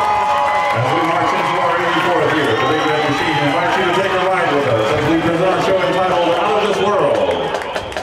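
Stadium crowd chatter: many voices talking at once.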